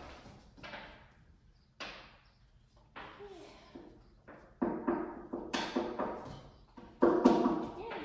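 A string of sharp knocks and thuds as a puppy and a trainer work around a box on a hard floor, the loudest about halfway through and near the end, mixed with brief low voice sounds.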